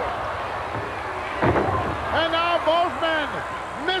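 Wrestling ring with a steady arena crowd noise, a single thump about one and a half seconds in, then a man's voice talking.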